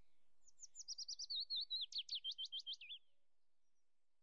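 Bird song: a fast run of about twenty high, down-slurred chirps, lasting about two and a half seconds and then stopping.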